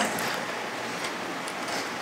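Steady, even hiss of background room noise in a lecture hall, with no distinct events.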